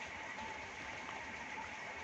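Faint, steady background hiss of room noise with a thin, faint steady tone running through it, in a pause with no speech.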